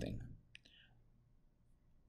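Near silence: room tone, with one short faint click about half a second in.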